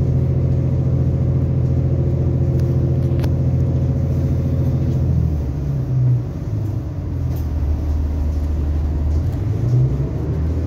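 Diesel engine of an Irish Rail 29000 class railcar heard from inside the carriage: a steady low drone that, about halfway through, drops to a lower, wavering note as the train is at a station platform.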